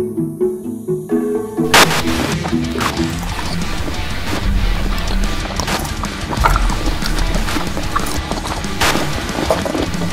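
Music: light pizzicato strings that break off about two seconds in with a sudden loud crash. Dense, noisy music with low notes and scattered sharp hits follows, with another big hit near the end.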